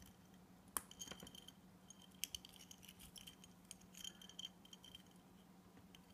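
Faint, irregular clicks and light metallic clinks of a metal watch bracelet and its ordinary clasp being handled.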